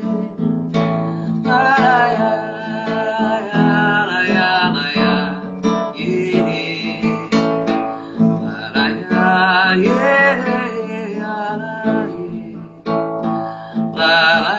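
Acoustic guitar strummed and plucked, with a woman singing wordlessly over it.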